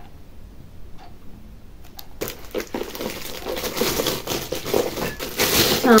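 Packaging rustling and crinkling as a handbag is handled and unwrapped. It starts about two seconds in and grows louder.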